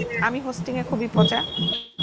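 A steady high-pitched electronic beep, one held tone about a second long, starting a little past the middle, with talking going on over it; the audio cuts out completely for an instant just before the end.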